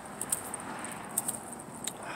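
Faint steady outdoor background noise with a few light clicks.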